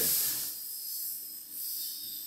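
Paasche Millennium bottom-feed airbrush spraying paint: a steady high hiss of air and paint through the nozzle, loudest at the start and then softer.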